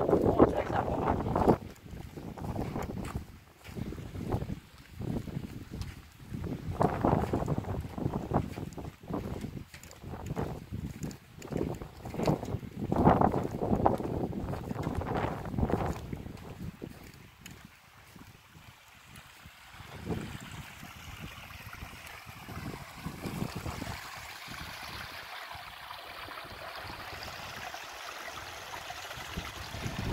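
Wind buffeting the microphone in irregular gusts. About two-thirds of the way through it drops away to a quieter, steady rush of a small bog stream running over stones.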